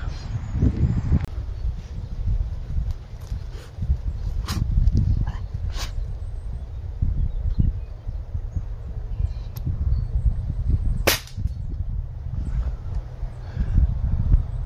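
Air rifle fired once: a single sharp crack about eleven seconds in, preceded by two fainter clicks around four and a half and six seconds, over a steady low rumble.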